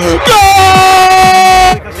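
A football commentator's long, held shout of "gol" on one sustained, slightly sliding note, very loud, lasting over a second and cutting off just before the end.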